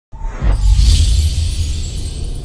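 Cinematic logo-sting intro music: a deep bass hit about half a second in, with a high shimmering sweep over it.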